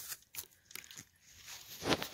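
Faint scattered crunches and clicks of movement and handling, with a louder one near the end.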